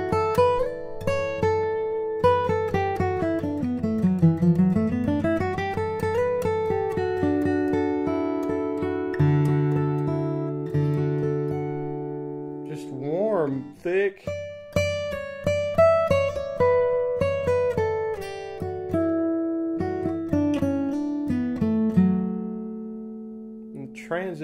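A tree-mahogany and West Virginia red spruce D-18 dreadnought acoustic guitar being played solo: picked single-note runs and chords that ring on with long sustain. A bass run dips down and climbs back a few seconds in, and a quick rising slide comes about halfway through.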